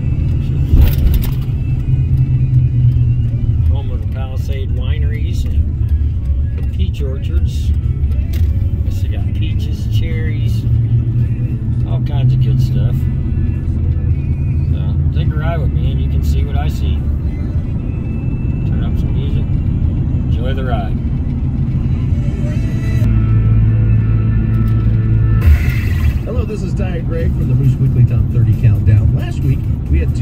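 Steady low road and engine rumble inside a moving car's cabin, with the car radio playing music and voice over it.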